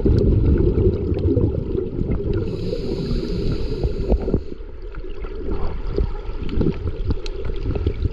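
Underwater sound picked up by a diver's camera: a steady low rumble and gurgle of water with scattered small clicks. About two and a half seconds in, a scuba regulator hisses for about two seconds on the diver's inhale.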